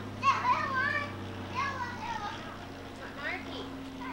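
Children's high-pitched voices calling out and chattering in a few short bursts, with no clear words, over a steady low hum.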